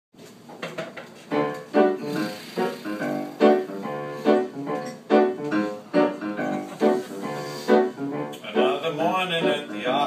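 Piano introduction to a show tune: rhythmic repeated chords, struck about every half second to a second.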